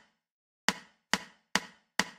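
Four sharp count-in clicks, evenly spaced about half a second apart, counting off a one-bar lead-in before the drum track begins.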